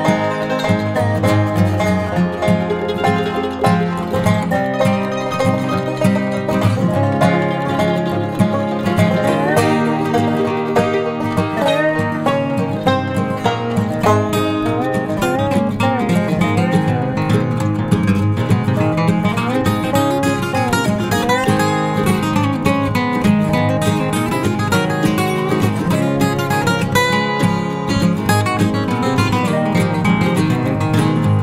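Background music played on plucked string instruments, led by acoustic guitar, in a country style, steady throughout.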